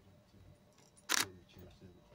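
A single sharp camera shutter click about a second in, over a low murmur of the room.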